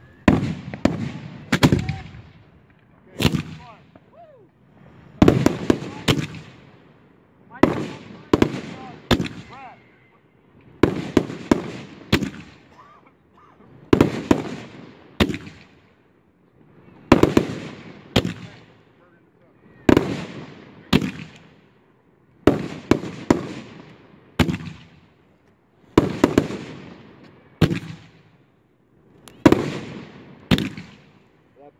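Multi-shot fireworks finale cakes firing overhead: sharp booms in clusters of about three, the clusters coming roughly every three seconds, each boom trailing off in a rumble.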